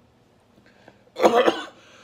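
A man coughs hard once, about a second in, followed by a fainter breathy exhale. He is gagging at the taste of balut he has just eaten.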